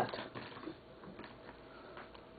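Faint, scattered light clicks and taps of small round cards being handled and passed over a table.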